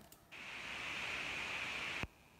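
A steady hiss that starts about a third of a second in and cuts off suddenly at the end.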